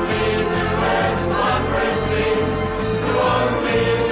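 A 1970s scripture-song recording: a group of voices singing a held melody together over a band, with a bass line stepping in short even notes about four a second.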